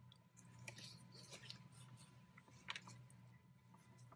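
Faint scratching and tapping of a pencil drawing a small circle on a paper worksheet, with a slightly sharper tick a little after halfway, over quiet room hum.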